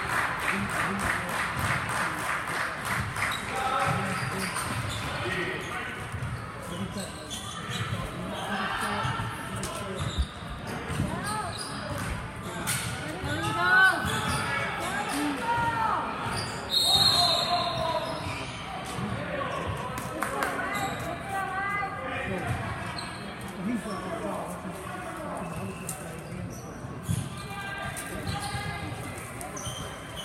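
Indoor basketball game in a gym: a basketball bouncing on the hardwood court amid the talk and calls of players and spectators, all echoing in the large hall.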